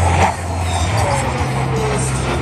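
F-16 fighter jet's single turbofan engine roaring overhead, with a whine that slowly falls in pitch; the overall level dips slightly a quarter second in.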